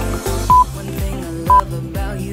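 Two short electronic countdown-timer beeps at the same pitch, about a second apart, marking the last seconds of a timed exercise, over background music.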